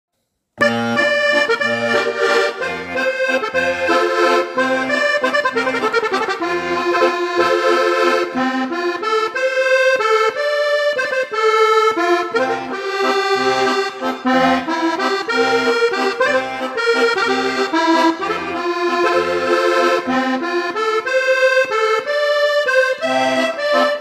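Diatonic button accordion (organetto) playing a waltz, with a melody on the treble buttons over a pulsing bass-and-chord accompaniment. It starts about half a second in.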